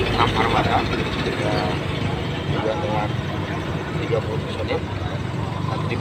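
A man speaking in short phrases over the steady low hum of an idling engine.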